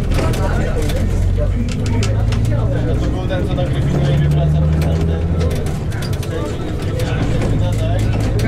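Interior of a Jelcz 120M city bus under way: the diesel engine drones, with rattles and knocks from the bus body. The engine note rises for a couple of seconds about halfway through, then drops back.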